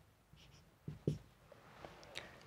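Marker pen writing on a whiteboard: faint scratching strokes, with two soft knocks of the pen against the board about a second in.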